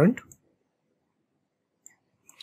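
The tail of a spoken word, then near silence with one faint computer-mouse click near the end.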